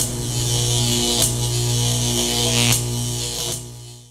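Electronic trailer sound design under a logo reveal: a steady low buzzing hum with a bright hiss over it and two short swishes, fading out near the end.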